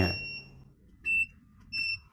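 Home inverters beeping as they are switched on one after another: short, high-pitched beeps, one at the start, one about a second in and one near the end.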